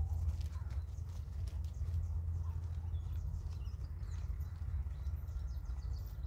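Hooves of a ridden horse falling on the arena surface, under a steady low rumble that is the loudest sound.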